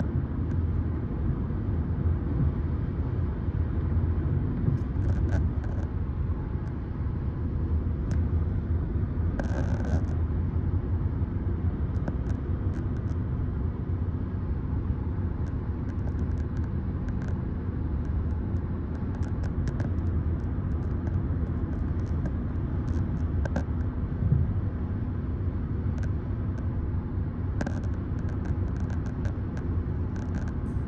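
Steady low rumble of road and engine noise heard from inside a moving car, with a couple of brief faint higher sounds about ten seconds in and near the end.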